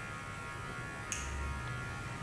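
A steady electrical hum and buzz, with one short sharp click about a second in.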